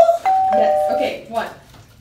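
Two-note electronic ding-dong chime: a higher note, then a lower one, together lasting under a second. It sounds as a correct-answer signal.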